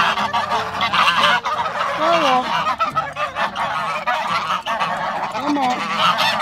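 A flock of Pilgrim geese honking and chattering continuously, many calls overlapping, with a few louder, clearer honks standing out.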